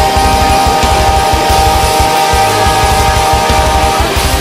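Melodic death metal: rapid double-kick drumming under a single long held high note, which cuts off at the very end.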